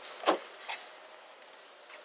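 A sharp knock about a quarter of a second in, then a lighter click about half a second later, against a quiet background.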